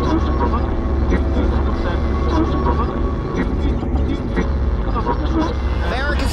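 Outdoor street ambience from high above a parade route: a steady low rumble with faint, distant crowd voices.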